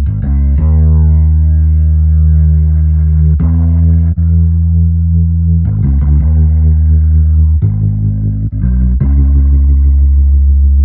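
Electric bass guitar loop, a gospel line in G-sharp minor, played through a Leslie-style rotary speaker plugin (UAD Waterfall Rotary). Long held low notes change every two seconds or so.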